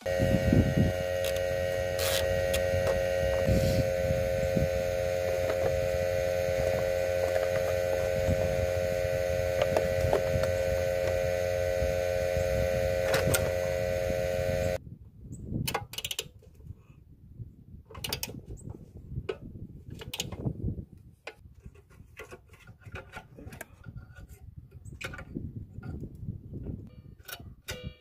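A Predator 301cc single-cylinder engine running at a steady speed, with a constant hum over a low rumble, that cuts off abruptly about fifteen seconds in. After that come scattered clicks and knocks of hands handling the engine's plastic air-filter housing and throttle linkage.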